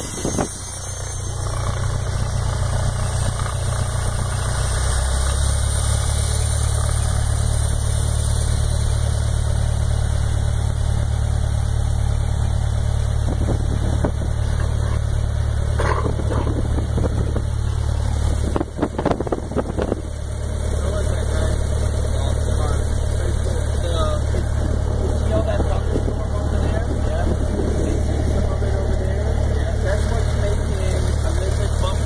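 Piston engine of a high-wing light aircraft running at low taxi power, a steady low drone heard from inside the cabin. It grows louder about five seconds in and dips briefly just past the middle.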